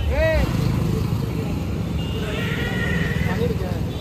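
Steady low rumble of road traffic, with a loaded truck and cars going past close by.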